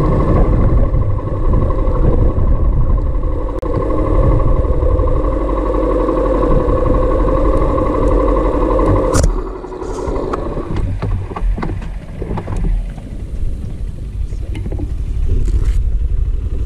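Small motorcycle engine running steadily while riding on a gravel road. About nine seconds in the sound drops abruptly, with a click, and the engine carries on quieter and rougher.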